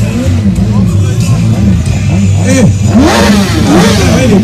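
Motorcycle engine revved in short blips that rise and fall in pitch, with one louder rev climbing about three seconds in.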